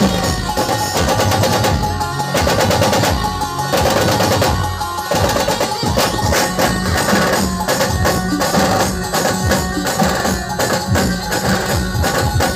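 Loud live procession-band music through truck-mounted loudspeakers: drums beating a steady rhythm under held melody notes.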